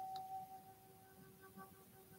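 Faint soft background music, a few held tones that fade out into near silence.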